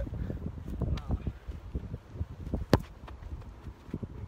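A football struck hard by a kick: one sharp, loud thud about three-quarters of the way through, over a low rumble of wind on the microphone.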